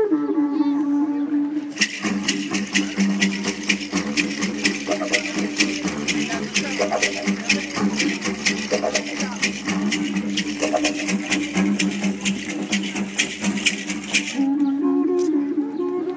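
Didgeridoo played as a continuous low drone. From about two seconds in until near the end, a fast, even, high-pitched rattling rhythm is layered over it.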